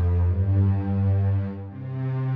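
Korg Triton synthesizer playing a strings patch: sustained chords held steadily, moving to a new chord near the end, sent back into Cubase as a test of the audio input.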